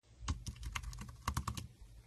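Fast typing on a flat, low-profile computer keyboard: a quick run of about a dozen key clicks that stops about a second and a half in.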